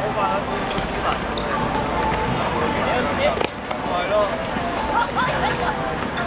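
Live sound of a football game on a hard court: indistinct shouting from players and onlookers, with a few sharp thuds of the ball being kicked and played.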